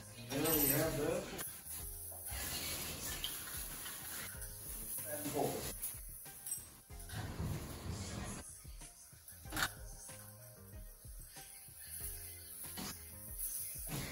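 Fan parts and plastic wrapping handled and lifted out of a cardboard box, with rustling, light knocks and one sharp click a little before ten seconds in. A brief voice is heard near the start and again about five seconds in, over faint music.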